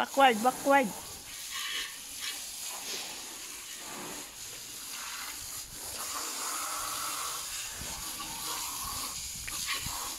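Water hissing steadily from a handheld garden-hose spray nozzle as it sprays onto a car's wheel and body. A short voiced call, rising and falling in pitch, rings out at the very start and is the loudest sound.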